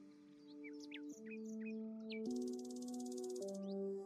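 Soft background music of sustained chords that change every second or so, with birdsong chirps and a rapid trill mixed in.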